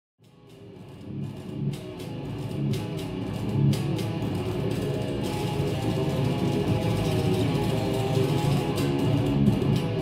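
Electric guitar played on an Epiphone Les Paul Custom: a steady run of picked notes and chords, fading in from silence over the first couple of seconds.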